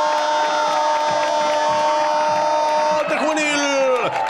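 Football radio commentator's long drawn-out goal cry: one steady held note that falls in pitch and breaks off about three seconds in.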